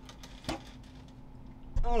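Quiet room with a single light knock about half a second in, from handling the electronic drum pad, and a low thump near the end.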